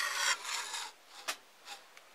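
A homemade flat-top mole trap, a wooden top on steel hoops, scraping across a wooden tabletop for about a second as it is moved, followed by two light knocks.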